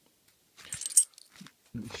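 A small bunch of padlock keys jingling briefly, a quick metallic clatter about a second in.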